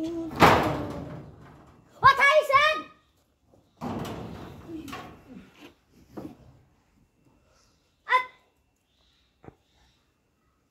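A sudden loud thump about half a second in that dies away over a second, followed by a high-pitched voice for about a second and scattered knocks and rustles.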